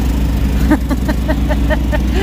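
Portable generator running with a steady low hum, powering the camper trailer's air conditioner.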